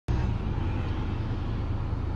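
A vehicle engine idling: a steady low rumble.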